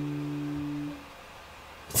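Acoustic guitar chord ringing out and fading, cut short about a second in.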